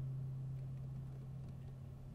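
Acoustic guitar's last low note of the song ringing on alone and slowly fading out.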